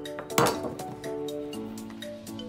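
A steel chef's knife set down with a single clatter on the kitchen counter about half a second in, over background music.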